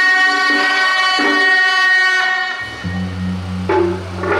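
Procession music: a sustained, pitched melody line changes note a few times, then gives way to a low, steady drone about two-thirds of the way in.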